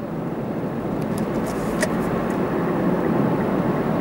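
Steady road and engine noise of a moving car, heard from inside the cabin, with a few faint ticks between one and two seconds in.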